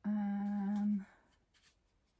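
A woman humming one steady "mmm" note for about a second.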